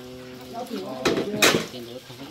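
Dishes and metal utensils clattering as they are washed by hand in a large metal basin: two sharp clanks about a second in and half a second later, the second the louder.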